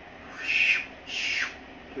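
A puppy giving two short, high-pitched cries in quick succession, the second falling in pitch.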